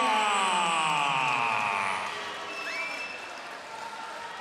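A ring announcer's long drawn-out call of a fighter's name, the held last syllable sliding down in pitch for about two seconds and echoing through the arena. The crowd's cheering then fades under it, with a short whistle near the middle.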